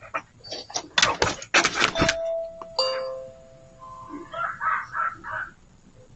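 A dog barking several times, loud and sharp, close to a video doorbell, then the doorbell chime about two seconds in: a held higher note followed by a lower one. A few shorter, higher sounds follow.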